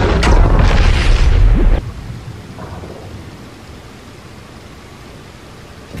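Film soundtrack sound effects: a loud, deep rumble that cuts off suddenly about two seconds in, leaving a quiet, steady low wash of sound.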